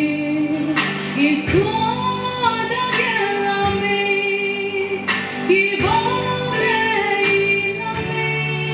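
A woman singing live into a microphone, holding long notes that slide between pitches, over a steady instrumental accompaniment.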